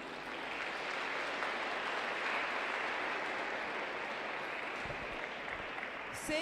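Audience applauding steadily, starting as the skating music stops.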